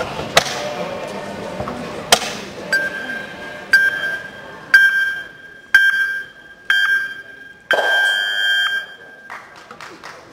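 Track-cycling start-gate countdown timer: five short electronic beeps one second apart, then a long beep that is the start signal for the time trial. Two sharp knocks come in the first couple of seconds, over the murmur of a large hall.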